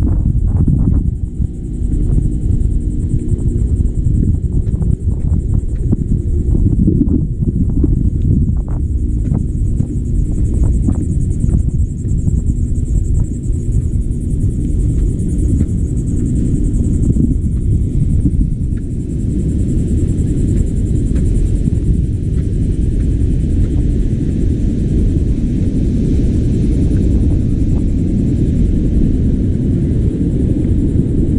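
Wind buffeting a handheld camera's microphone: a loud, steady, low rumble. Footsteps on the wooden boardwalk knock through it irregularly in roughly the first half.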